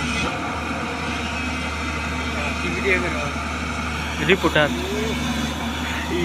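Heavy diesel engine idling steadily, a low even drone from the excavator or the dump truck. A couple of brief voice fragments cut in about halfway through.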